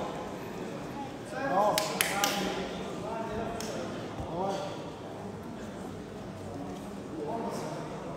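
Coaches and spectators shouting instructions across a large echoing hall during a grappling match, with a quick run of three sharp smacks about two seconds in.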